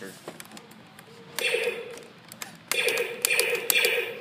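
Star Wars electronic toy blaster playing its sound effects through its small built-in speaker, in three bursts, after a few faint clicks.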